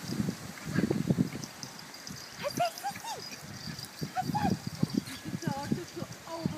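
A warthog and Yorkshire terriers at play: a run of short, low, grunt-like sounds with a few brief high whines that rise and fall in the middle.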